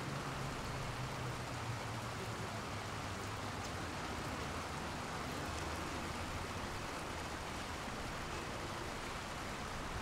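Steady rush of water from a shallow city stream and its small fountain spouts, with a low hum of traffic underneath.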